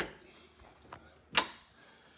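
Quiet room tone with a soft thump at the start and one sharp knock about one and a half seconds in.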